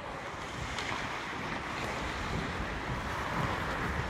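Ice rink noise during hockey practice: a steady hiss of skate blades scraping and gliding on the ice, with a few faint clicks.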